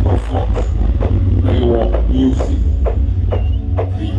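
Loud, continuous deep bass from a large truck-mounted street sound system, with voices over it.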